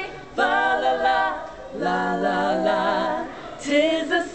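A small group of women singing a cappella, unaccompanied, in two long held phrases. The second phrase is sung in harmony.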